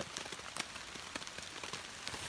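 Rain falling: a steady light hiss with many scattered, sharp drop ticks.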